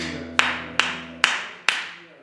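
Acoustic guitar played in sharp, evenly spaced strummed chord strokes, about two a second and five in all, with the low strings ringing under them. The last stroke dies away near the end.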